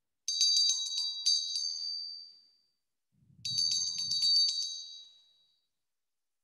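A small high-pitched bell rung twice. Each ringing is a quick rattle of about half a dozen strokes that rings on and fades over a second or so, and the second starts about three seconds after the first.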